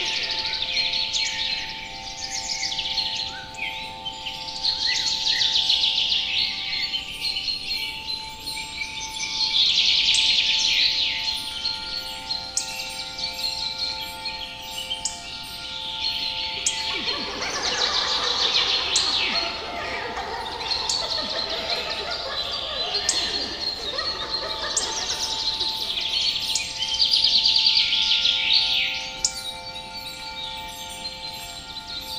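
Layered fantasy forest ambience: songbirds chirping and singing in swelling waves over a few steady held tones. Between about 17 and 24 seconds a lower, denser layer of sound joins in.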